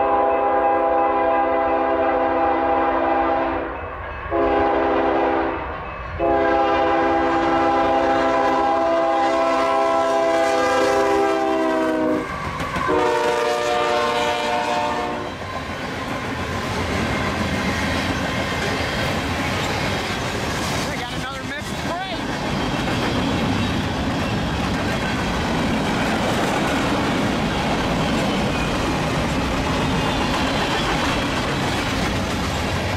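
Union Pacific freight locomotive horn sounding several long blasts, with two short breaks, as the train nears a grade crossing; its pitch drops about 12 seconds in as the locomotive passes. From about 15 seconds on, the freight cars roll by with a steady rumble and wheels clicking over the rail joints.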